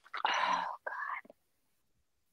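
A woman whispering a few breathy words under her breath, lasting about a second.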